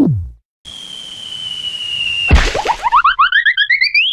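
Cartoon sound effects. Right at the start a quick falling zap sounds as the portal gun fires, then a steady high whistle plays over hiss for about a second and a half. A sudden heavy thud comes a little over two seconds in, followed by a fast, repeating, boing-like warble that rises in pitch until the end.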